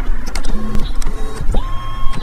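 Power-seat adjustment motor in a Tesla Model Y whirring as the seat switch is held, with small clicks. The motor's pitch rises and then holds steady about one and a half seconds in.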